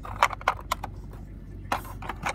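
Plastic toy pieces handled by hand: several quick sharp clicks and taps in the first second, then a short scraping rustle near the end.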